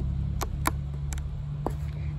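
A few light plastic clicks, four in under two seconds, from the flip-up dust cap of a 12-volt cigarette-lighter socket being handled and opened, over a steady low hum.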